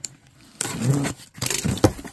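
A box cutter slitting packing tape along a cardboard box, then the flaps being pulled open. Scraping and tearing starts about half a second in, with a few sharp knocks near the end.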